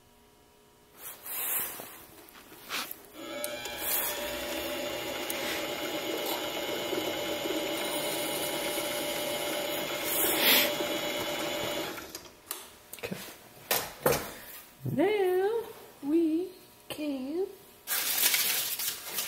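Grizzly mini lathe motor running with a steady hum, starting about three seconds in and switching off about twelve seconds in, with a few clicks around it. Near the end, a few short hummed vocal sounds that glide in pitch.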